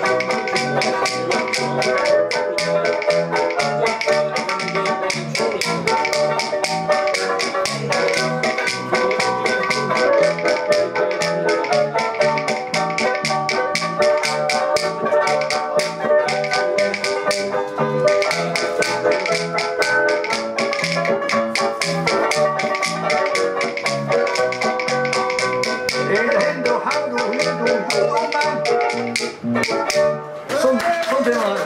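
Banjolele strummed in a fast, busy rhythm over an accompaniment with a steady alternating bass line. Rapid tapping clicks keep time throughout.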